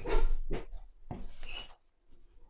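Cord and crocheted fabric rubbing and scraping close to the microphone as a stitch is worked with a crochet hook in thick 5 mm cord, in two bursts about a second apart.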